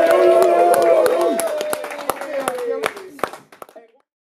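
Live audience clapping and shouting in response to a request for a round of applause, with a long held vocal shout over scattered claps. The sound fades out over the last second or so.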